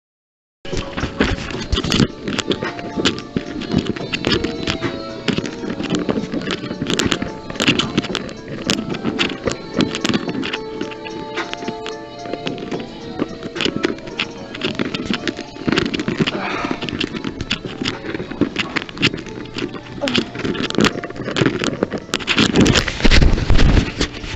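Background music playing over the chatter and clatter of a crowded bar, heard through a handheld phone camera.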